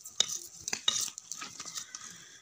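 Short-handled hand hoe scraping and chopping into loose, stony soil in quick, irregular strokes, with several sharp knocks where the blade hits stones, as it cuts a furrow for planting potatoes.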